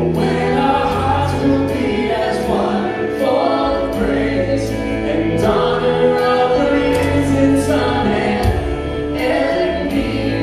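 A live worship band playing a contemporary worship song: several voices singing together over electric guitar, bass, keyboard and drums, with steady drum and cymbal hits.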